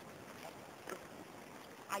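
Faint, steady outdoor background noise with a brief soft tick about a second in.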